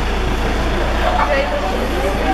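A car idling, heard as a steady low rumble, with people chattering close by.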